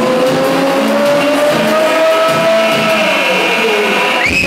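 Electronic dance music played by a DJ over a club sound system, in a breakdown with the bass cut out: a synth tone glides slowly upward, levels off, then falls away near the end.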